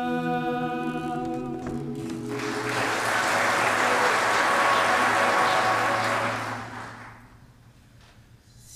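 Mixed a cappella vocal quartet holding a sustained chord that cuts off about two seconds in, followed by audience applause that fades away near the end.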